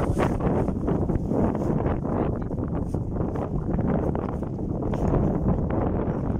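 Wind buffeting the microphone: a steady, low rushing noise.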